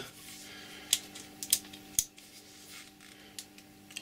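A few light clicks and taps as an old metal-bodied electric drill is handled and turned over in the hands, the sharpest about two seconds in, over a faint steady hum.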